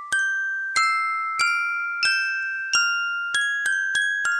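Music box (orgel) melody: single high metallic notes struck about every two-thirds of a second, each ringing and fading before the next, with two quicker notes near the end.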